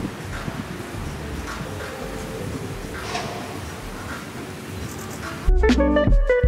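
Steady low background noise with a few faint distant sounds, then background music with plucked acoustic guitar starting suddenly near the end.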